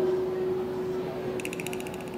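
A steady held tone, joined a little past halfway by a fast run of ratchet-like clicks, about fifteen a second.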